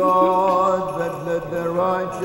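Choir singing Byzantine-style Orthodox liturgical chant: a sung melody over a steady held low drone note (ison).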